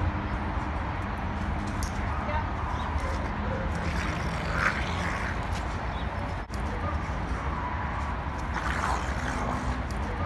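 A dog growling and barking as it grabs and wrestles a fake dog, over a steady background rumble.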